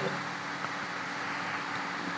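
Steady low electrical or ventilation hum under a faint hiss: the room tone of a meeting-room recording between spoken words.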